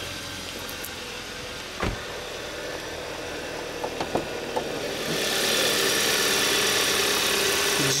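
A 2014 Hyundai Sonata's 2.4-litre GDI four-cylinder engine idling, with a single thump about two seconds in and a few light clicks near four seconds. About five seconds in, the idle turns clearly louder and fuller as the hood is raised over the engine.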